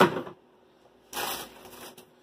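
A sharp knock as a grocery item is set down, then, about a second in, a short burst of plastic rustling and crinkling as the next items are handled.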